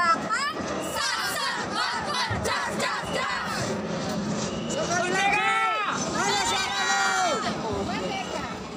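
A group of women's voices chanting and shouting a team cheer together, with two long drawn-out shouts in the second half, the later one dropping in pitch at its end.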